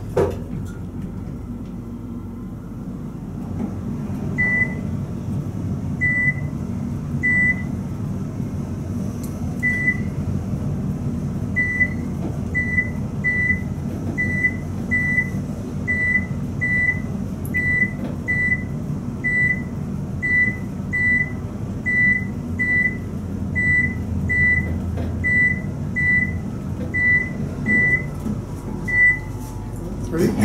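Otis elevator car rising with a steady low hum. A short high beep sounds as each floor passes, roughly one a second, starting a few seconds in and stopping just before the car arrives.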